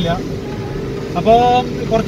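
Car cabin noise while driving: a steady hum of engine and road, with a man's voice coming in a little over a second in.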